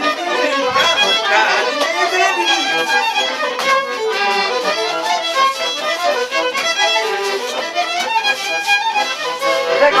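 Traditional Polish village folk music: a fiddle and an accordion playing a dance tune together.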